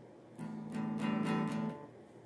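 A guitar strummed several times in quick succession, the chord ringing for just over a second before it is stopped.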